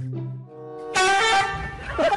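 Background music with steady notes, then about a second in a sudden loud horn-like blast lasting about a second.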